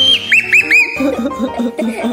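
A child's high-pitched squeal that rises and holds, followed by three short squeaks in quick succession, over background music.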